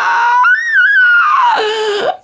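A person's long, high-pitched squealing laugh, without words, that rises and wavers in pitch and then drops lower near the end.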